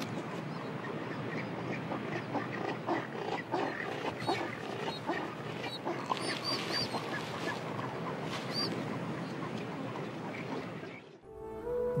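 Din of a crowded rockhopper penguin colony: many birds calling over one another in a steady layer, with a few short high peeps standing out. It cuts off abruptly about a second before the end, and music begins.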